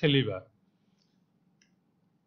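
A man says one short word, then a faint low hum with two or three small, faint clicks about a second and a second and a half in.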